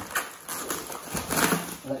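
Black plastic wrapping rustling and crinkling as it is pulled off a parcel, with a few irregular knocks and thumps from handling.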